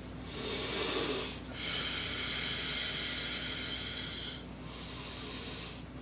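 A person breathing heavily close to a microphone: one breath of about a second, then a longer one of about three seconds, then a fainter breath near the end.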